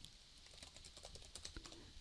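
Faint typing on a computer keyboard: a quick run of key clicks entering a file name. It follows a single click right at the start.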